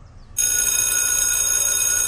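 An electric school bell ringing, starting suddenly about half a second in and holding steady.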